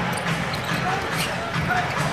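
A basketball being dribbled on a hardwood court, a few short bounces, under the steady noise of an arena crowd.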